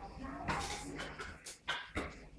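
A Neapolitan mastiff making a few short vocal sounds.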